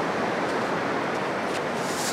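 Steady hiss of small waves washing onto a sand beach.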